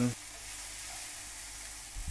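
Chow mein of egg noodles, chicken and bean sprouts frying in a hot wok: a steady sizzle as it is tossed with chopsticks.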